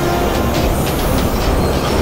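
Cartoon fire-breath sound effect: a loud, steady rushing roar of flame over a deep rumble.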